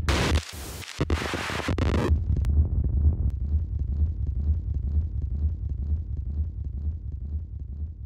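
A song's outro effect: a harsh burst of noise for about two seconds as the music cuts off, then a deep low rumble that slowly fades away.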